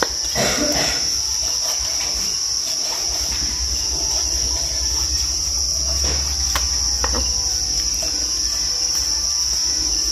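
Steady high-pitched insect chorus, typical of crickets, with a few knife strokes on a wooden chopping board.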